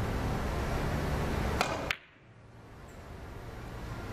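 Three-cushion billiard shot: two sharp clicks about a third of a second apart, the cue tip striking the cue ball and then that ball hitting the object ball. The clicks come over a steady hiss that cuts off suddenly right after them.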